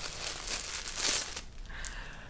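Packaging being crinkled and torn open by hand as a parcel is unwrapped. The crackling dies down after about a second and a half.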